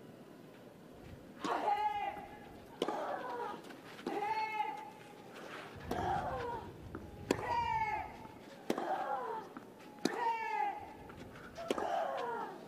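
Tennis rally on a clay court: the ball is struck by the rackets about every second and a half, and each stroke comes with a player's short grunt that falls in pitch.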